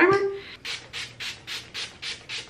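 Fine-mist pump spray bottle of Wet n Wild Photo Focus coconut primer water being pumped quickly at the face, a run of about nine short sprays in a row starting about half a second in.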